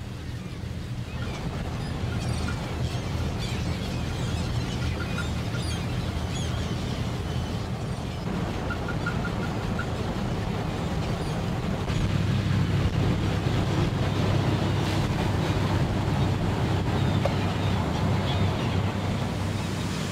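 A shrimp cutter's engine running steadily with wind and sea noise, a little louder from about twelve seconds in, and a few faint gull calls.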